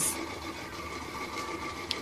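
A steady low machine hum with faint, even whining tones, and one brief click near the end.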